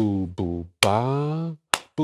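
A man sings a rhythm on scat syllables ("ba, du"), three notes with the last one held. Under it a steady bass-drum pulse keeps the beat in 3/4, with a hit about every 0.85 seconds.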